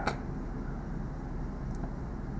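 Steady low background noise with a faint hum: room tone.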